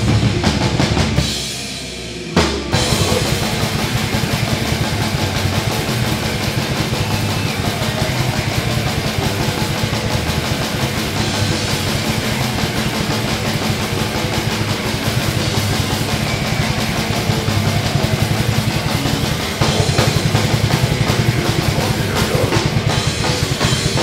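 Heavy metal band playing live, with the drum kit loudest: fast, dense kick drum and crashing Sabian cymbals over distorted guitar. The band stops short for about a second, a little over a second in, then crashes back in and plays on, growing louder near the end.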